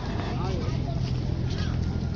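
Outdoor ambience: a steady low rumble under a noisy haze, with people's voices talking in the background.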